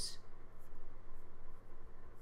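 Pause in speech: a steady low hum of room and microphone background noise, with a few faint soft clicks in the first second or so.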